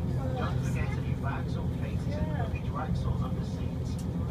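Steady low rumble inside the carriage of a TransPennine Express diesel train as it runs slowly into a station, with a voice talking over it.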